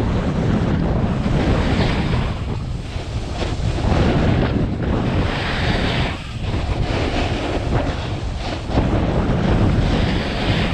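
Wind buffeting the microphone of a camera on a skier running downhill: a steady low rumble, with the hiss of skis sliding and scraping over snow swelling and fading every couple of seconds through the turns.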